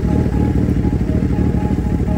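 Suzuki Hayabusa's inline-four engine running steadily, a dense rapid low pulsing, with background music over it.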